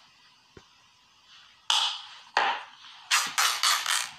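Near silence, then black tape being pulled and torn from the roll in a few sharp, scratchy rips, with a quick run of short rips near the end.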